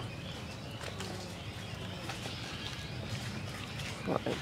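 Footsteps of several people walking on a dry, leaf-strewn dirt path: irregular soft crunches and taps.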